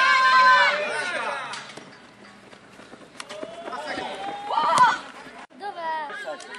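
Voices shouting and calling out during a futsal match: a loud, drawn-out shout at the start and a rising call near the end. The sound drops out abruptly at an edit cut.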